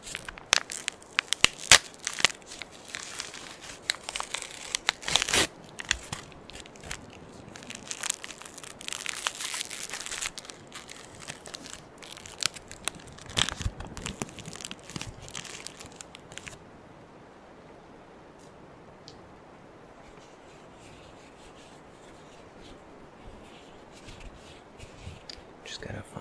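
A gauze pad's wrapper being torn open and crinkled by hand close to the microphone, a dense run of sharp crackles and rips for about sixteen seconds. After that there is only faint, soft handling of the gauze.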